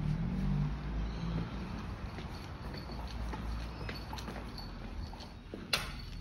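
Hard-soled footsteps on a tiled floor over a low rumble, then one sharp knock near the end as an aluminium sliding door is moved against its frame.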